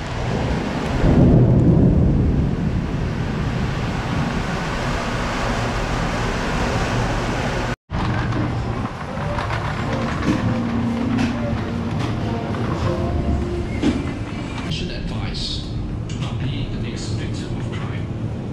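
Supermarket aisle ambience picked up by a handheld camera on the move: a steady low rumble and hiss with indistinct voices, louder for a moment in the first couple of seconds. The sound cuts out for an instant about eight seconds in, and scattered clicks and light rattles follow in the second half.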